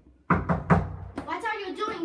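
Three quick, sharp knocks in the first second, followed by a voice starting to speak.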